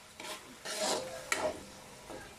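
Metal spatula scraping against the bottom of a metal wok while stirring corned beef: three quick scrapes, the middle one longest and loudest, the last with a sharp clink.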